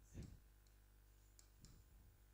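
Near silence, with a few faint taps of a stylus on a smart board's screen as a word is written.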